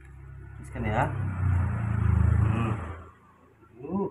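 A motor vehicle passing by, its engine rumble swelling to a peak about two seconds in and fading away a second later.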